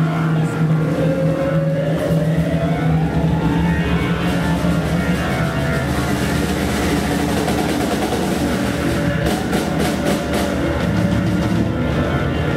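Progressive rock band playing live on stage: sustained, held chords with a tone that glides upward in the first few seconds. Drum and cymbal strokes come in near the end.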